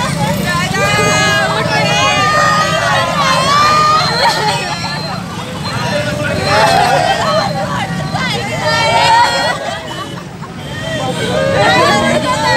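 Several people's voices wailing and crying out over one another, with a steady low hum beneath.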